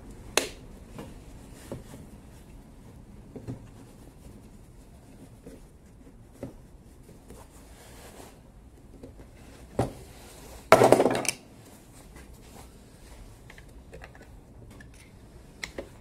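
Pliers clicking, gripping and scraping on the plastic screw-on brush cap of a Makita cordless angle grinder, a cap melted and seized into the housing by electrolysis. There are scattered sharp clicks and a knock, then a louder rough scrape lasting under a second about two-thirds of the way through.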